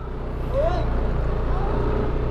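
Motor scooter engine running steadily under the rider at low road speed, picking up slightly in the first half second as it pulls away.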